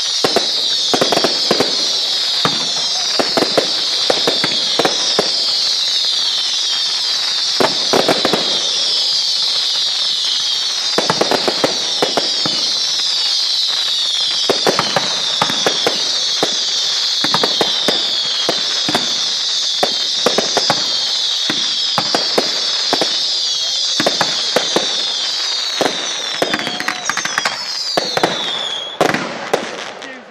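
Ground fireworks set piece going off: a dense, continuous run of overlapping falling whistles, with crackling and pops throughout. It stops abruptly about a second before the end.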